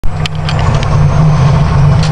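Fire engine's engine running with a steady low rumble, heard from inside the cab as the truck rolls along. A few short rattles sound in the first half second.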